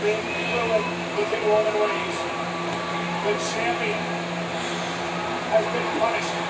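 Faint, distant-sounding speech, likely the match broadcast playing in the room, over a steady low hum.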